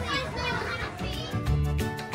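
Children's voices over background music with a steady beat; the voices are loudest in the first second, then the music carries on alone.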